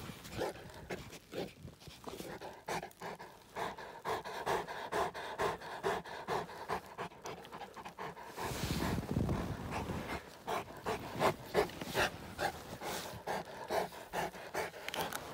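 A Saint Bernard panting close by, a quick, even rhythm of breaths. A brief rush of noise breaks in about eight and a half seconds in.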